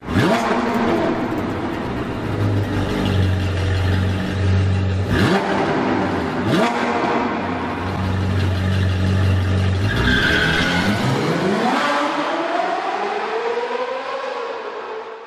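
Sports car engine revving and accelerating, its pitch sweeping up sharply twice about five and six and a half seconds in. From about ten seconds in it climbs in one long rising sweep and then fades out.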